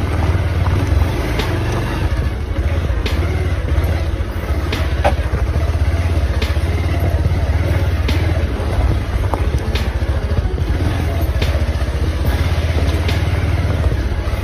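Motorcycle engine running at a steady low speed on a rough dirt track. A thin rattle of short knocks comes every second or so as the bike goes over the bumps.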